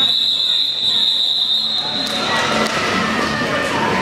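A referee's whistle blown in one long steady blast that stops about two seconds in, over crowd chatter and the knock and rumble of roller skates on a sport-court floor.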